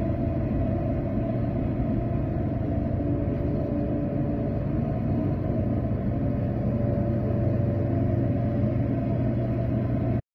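A steady low rumbling drone with a few faint held tones and no change in level.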